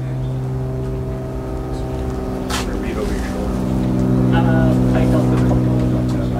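An engine or motor running with a steady low drone. Its pitch wavers briefly about halfway through, then it settles and grows louder. A short click comes about two and a half seconds in.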